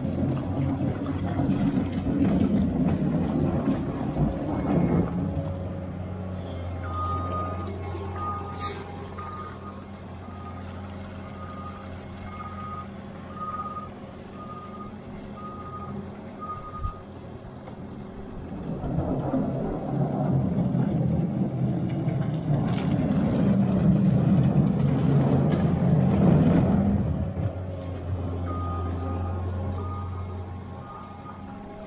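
Skid steer loader's diesel engine running throughout, working harder in two louder stretches as it scrapes liquid manure off the concrete. In the middle and again near the end its backup alarm beeps steadily, about once a second, while it reverses.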